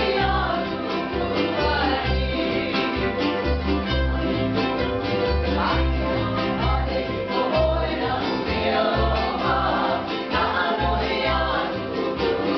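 Hawaiian hula song: a voice sings a melody over plucked strings and a regular, even bass line.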